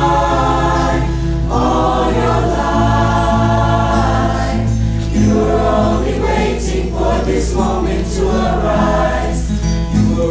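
Mixed high school choir singing in harmony, holding long chords that shift every second or so.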